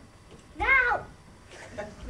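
A child's voice giving one short, loud, meow-like call whose pitch rises and then falls, a little over half a second in.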